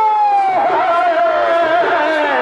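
Chhau dance accompaniment: a shehnai holds one long high note that wavers and slowly falls, with the drums silent beneath it.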